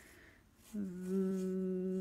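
A woman's steady, level hum ('mmm'), a thinking sound held for over a second, starting about two-thirds of a second in after a brief hush.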